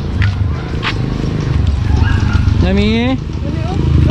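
People's voices over a steady low rumble, with one short rising vocal call about three seconds in.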